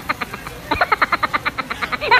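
Women laughing in rapid, giggling pulses. The laughter breaks off briefly after the start and picks up again under a second in.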